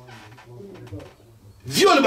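A man's low, quiet voiced murmur, then a man starts speaking loudly near the end.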